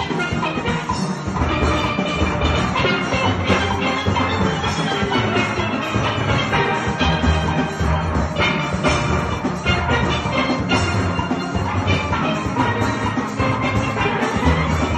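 Steel band playing: chrome-faced lead pans carrying the tune over bass pans made from full-size oil drums, with a steady beat.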